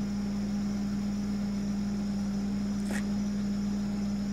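Steady low hum of an idling vehicle engine, with a faint steady insect trill above it. There is one brief click about three seconds in.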